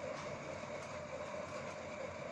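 Steady background hum and hiss with a faint constant tone, no speech.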